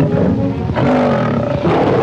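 A tiger roaring over the film's background music.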